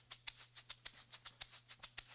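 Two egg shakers held together and shaken back and forth in an even, fast rhythm, about seven crisp shakes a second. This is the horizontal technique, which keeps the beads inside moving level so that both directions sound alike.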